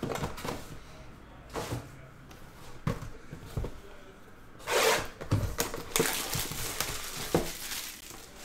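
Cardboard trading-card boxes handled on a table: scattered light taps and knocks, with a brief rustling slide about five seconds in.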